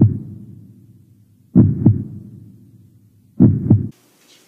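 Suspense heartbeat sound effect: three slow double thumps, lub-dub, about two seconds apart, each fading out in a long low tail.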